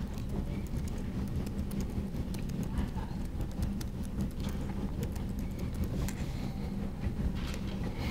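Typing on a laptop keyboard: a run of light, irregular key clicks over a steady low room hum.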